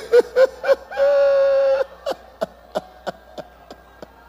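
A man's voice through a microphone making wordless sounds: a few short rising-and-falling syllables, a held 'ooh' lasting under a second about a second in, then a run of short, clipped syllables at about three a second.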